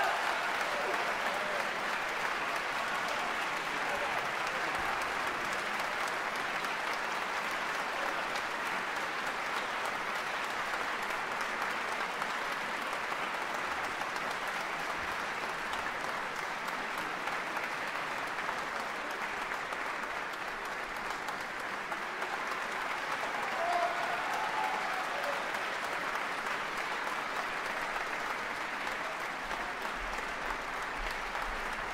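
Live concert-hall audience applauding, a steady unbroken sound of many hands clapping.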